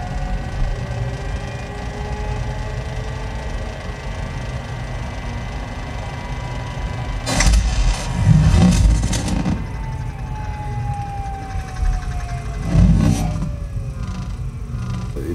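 Film sound-design track played back over studio monitors: sustained tones that slowly glide in pitch, with a few sudden loud hits about seven to nine seconds in and again near the end.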